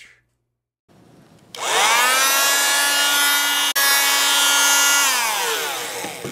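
Electric bone saw motor spinning up to a steady high whine with a rasping buzz over it, cutting out for an instant in the middle, then winding down in pitch near the end.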